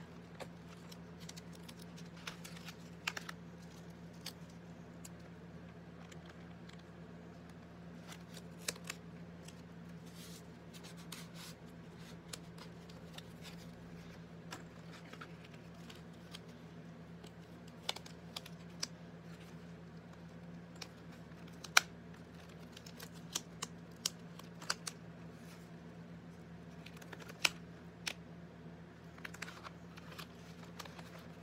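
Hands pressing a strip of black gaffer's tape into a book's gutter and handling its painted pages: scattered soft clicks, taps and rustles, with two sharper clicks in the second half, over a steady low hum.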